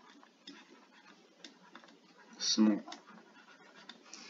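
A stylus tapping and scratching faintly on a tablet screen while handwriting, in scattered small clicks. About two and a half seconds in, a brief vocal sound, a short voiced noise from the writer, is the loudest thing.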